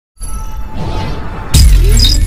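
Channel intro sting: electronic music and sound effects, with a sudden loud, deep impact hit about one and a half seconds in.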